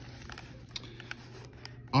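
Pages of a hardback book being turned by hand: a faint paper rustle with a few light ticks, over a low steady hum.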